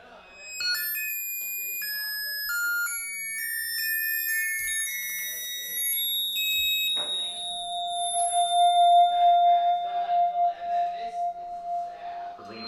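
Electronic music played live through PA speakers: clusters of pure high tones that step from pitch to pitch several times a second, giving way about seven seconds in to a long held middle tone over a busier, fluttering texture.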